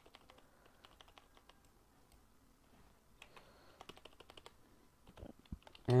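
Faint, irregular clicking of a computer keyboard and mouse, coming in small clusters of keystrokes and clicks.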